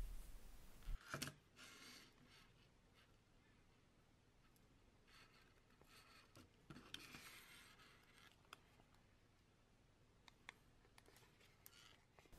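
Near silence with faint rustling and a few small clicks of hands handling a fishing rig's line and booms on a flat rig winder.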